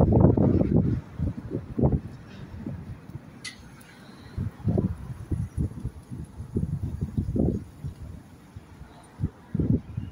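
Gusts of wind buffeting the microphone: irregular low rumbles that come and go, strongest in the first second and again around the middle.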